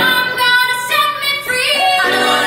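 Female vocalists singing live, holding a few high sung notes with breaks between them, while the low accompaniment almost drops out beneath the voices.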